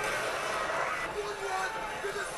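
Quiet battle-scene soundtrack from a TV drama: a steady rushing noise with faint men's shouting in it.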